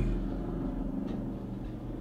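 Steady low rumble of an idling car engine heard inside the cabin, with one faint tick about a second in.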